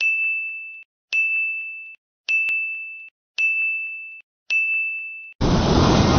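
Five identical electronic beeps, each a single steady high tone with a sharp start, held just under a second and repeating about once a second. About five seconds in, they give way to a loud rushing swell of sound.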